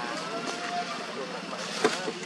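Long-tailed macaques calling: a few short high coos and squeaks, one drawn out a little, over steady outdoor background noise, with one sharp click near the end.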